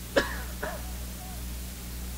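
A person briefly clears their throat: two short sounds in the first second, the first sharper. A steady low hum runs underneath.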